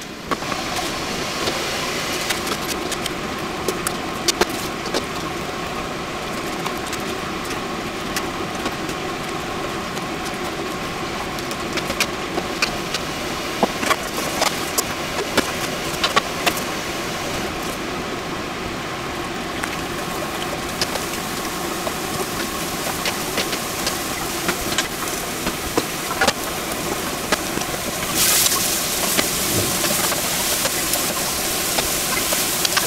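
Steady kitchen hum with scattered clicks and knocks of utensils on cookware. Near the end a louder hiss sets in as vegetables and mushrooms fry in a hot pan.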